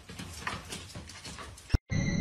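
A cat whimpering in a few short, faint cries. Near the end a sharp click, then a moment of silence.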